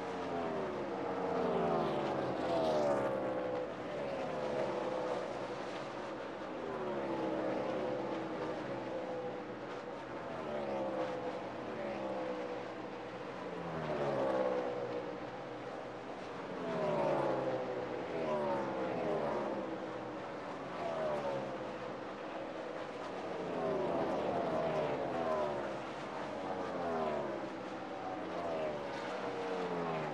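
NASCAR stock cars at racing speed, their V8 engines passing one after another, each dropping in pitch as it goes by.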